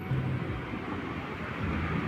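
Steady low rumble of street ambience picked up by a phone's microphone: distant traffic, with some wind on the microphone.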